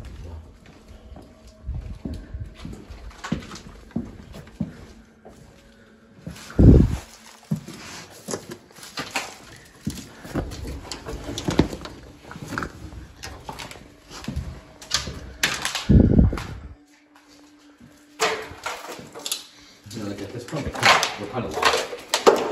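Footsteps and movement of several people walking through a building, with scattered knocks and clicks and two heavy low thumps, about 7 and 16 seconds in.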